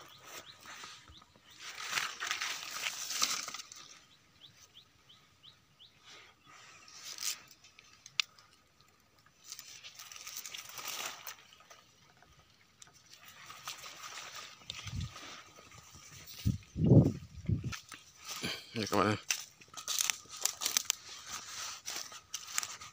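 Rustling and crunching of dry leaves and undergrowth as someone pushes through brush on foot, coming in irregular bursts, with a few low thumps past the middle.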